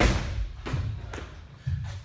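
A person's body dropping onto a rubber gym floor in a burpee, a heavy thud at the start followed by lighter knocks of hands and feet, over background music with a steady bass beat.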